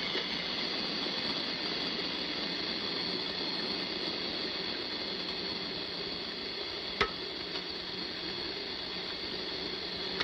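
Water running steadily from a bathroom sink tap, with one sharp click about seven seconds in.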